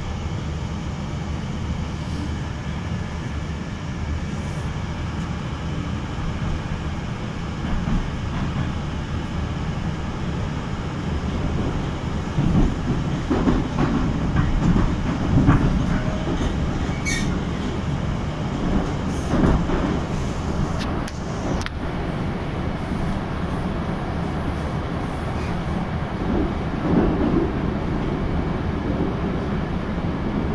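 Moscow Metro Circle line train running through the tunnel between stations, heard inside the car: a steady low rumble of wheels and running gear. Uneven louder knocks and rattles come through the middle of the run.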